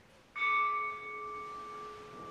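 A bell struck once about a third of a second in, then ringing on with a clear, steady tone that slowly fades.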